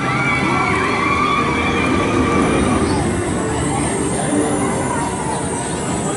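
Vekoma junior steel roller coaster train rolling along its track, a steady rumble with wavering squealing tones over it. A thin high whine comes in a little before halfway through.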